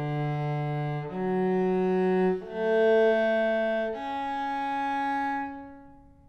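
Cello playing slow bowed notes, about four in turn, each held one to one and a half seconds, the last dying away near the end. It is an intonation exercise: fifth-partial natural harmonics of the open strings matched by stopped notes, tuned to a just major third.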